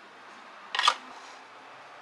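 A single short, sharp crackling click a little under a second in, over a steady faint hiss.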